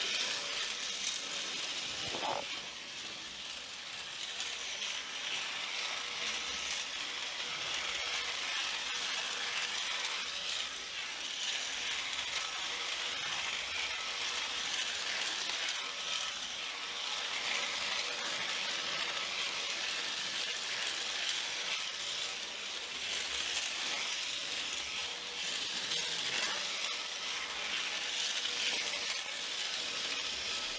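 Steady hiss with a few faint clicks and taps of a small screwdriver and metal model-locomotive motor parts being handled and fitted together by hand.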